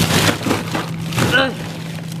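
Frozen food packages in an over-packed freezer rustling and knocking as they are shifted around, with a short vocal sound about a second and a half in.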